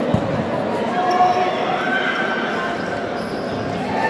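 A futsal ball thumping on the court just after the start, with players and spectators shouting across an indoor sports hall.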